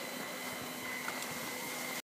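Skis sliding over packed snow, a steady hiss with small low knocks, under a faint steady high whine.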